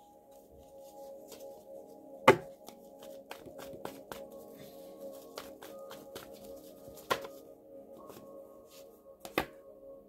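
A deck of oracle cards being shuffled and handled by hand: a run of short card clicks and snaps, the loudest about two seconds in and again around seven seconds and near the end, over soft ambient music with sustained tones.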